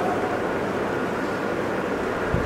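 Steady, even background hiss with no voice.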